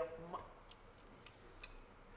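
Quiet hall room tone with four faint, irregularly spaced clicks, just after a spoken word trails off.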